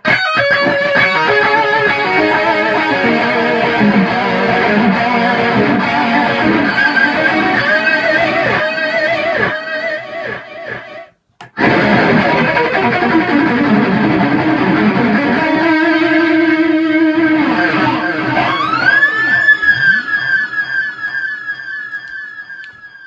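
Electric guitar through a Bogner Atma amp's crunch channel with a KHDK pedal and a delay pedal, played as distorted lines with echoing repeats. There is a brief break about eleven seconds in, then a held note. Near the end the delay is played into repeated sweeping, siren-like pitch swoops.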